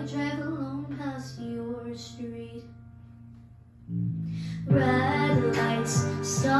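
A girl singing a pop ballad over a backing track. Her voice and the accompaniment die down to a quiet pause about three to four seconds in. A low note then enters, and just before five seconds the backing swells to full volume as the singing picks up again.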